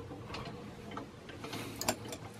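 Faint, irregular clicks and taps in a quiet room, the sharpest one a little before the end.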